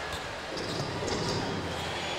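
Basketball arena ambience: a steady crowd murmur with a basketball being dribbled on the hardwood court.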